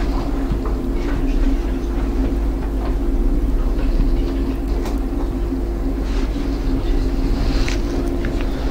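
Steady low hum filling the room, with a few faint short squeaks of a marker drawing on a whiteboard.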